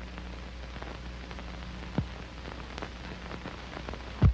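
Steady hiss and low hum with scattered crackles and one sharper pop about halfway through: the background noise of an old film soundtrack running on with no programme sound.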